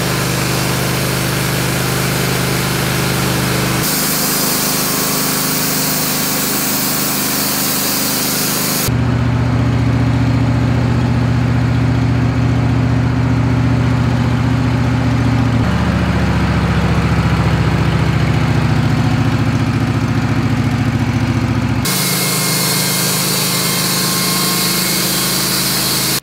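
Engine of a Wood-Mizer portable bandsaw mill running steadily under load as the band blade saws through a squared log. The tone and pitch change abruptly a few times, at about 4, 9, 16 and 22 seconds in.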